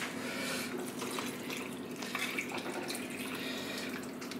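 Vegetable stock poured steadily from a plastic measuring jug into a casserole pot of chopped tomatoes and vegetables.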